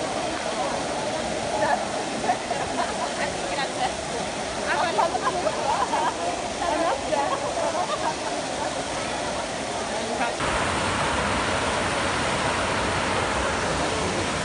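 Water from the Trevi Fountain's cascades splashing steadily into its basin, under the chatter of a crowd. About ten seconds in the sound cuts to a closer, louder, steadier rush of falling water with less chatter.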